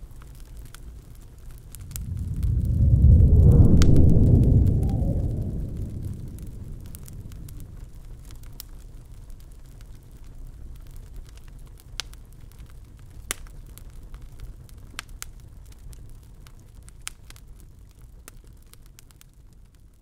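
Fireplace crackling with scattered sharp pops, under a deep rumble that swells about two seconds in, peaks around four seconds and slowly fades away.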